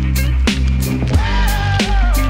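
Live electronic funk music from a band with drum kit and electronics: deep sustained bass under a steady beat of drum hits, about two to three a second, with a lead melody line that bends up and down in pitch.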